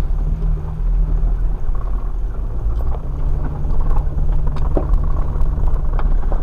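An off-road vehicle's engine running at low speed on a rough, muddy dirt trail, heard from inside the cab: a steady low drone with scattered knocks and rattles from the bumps.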